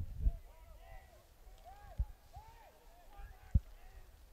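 Faint, distant shouting voices calling out across an outdoor playing field, with three dull low thumps: one just after the start, one about halfway and one near the end.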